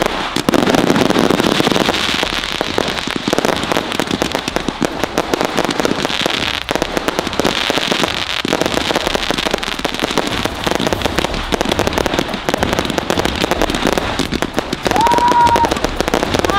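Dozens of multi-shot aerial sky-shot fireworks going off together: a dense, unbroken barrage of launch thumps and crackling bursts.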